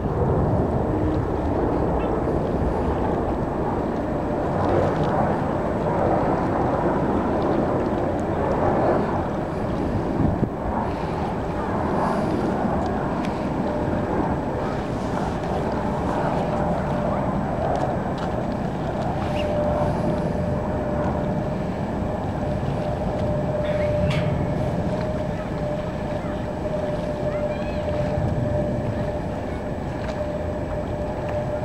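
Embraer 175 regional jet on final approach and landing: a steady jet engine rumble mixed with wind on the microphone, with a steady whine joining in about two-thirds of the way through.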